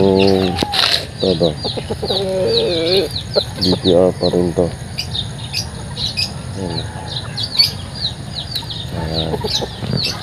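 Chickens clucking in short bursts, over steady rapid high-pitched chirping from small birds.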